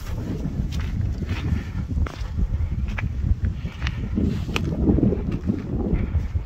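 Wind buffeting the phone's microphone in a steady low rumble, with footsteps crunching on a snowy path about once a second.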